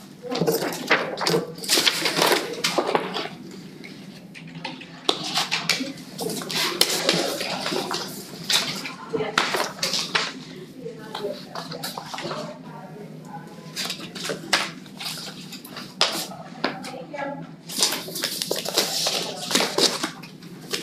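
Sheets of paper rustling and crinkling as they are handled and turned over on a table close to the microphone, in irregular spells with short pauses.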